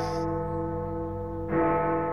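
A large bell tolling, each stroke ringing on long. It is struck again about one and a half seconds in.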